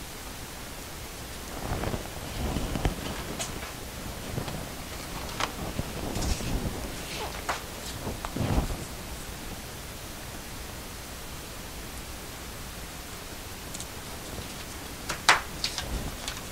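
Handling noise as square painted canvases are lifted off and slid across the work table: scattered rustles, soft knocks and a few sharp clicks over a steady background hiss. It is busiest in the first half, with two more clicks near the end.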